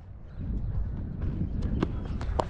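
A cricket batsman's footsteps running between the wickets on the pitch, picked up by a helmet-mounted camera, with a steady rumble of wind and movement on the microphone and a few light footfall ticks in the second half.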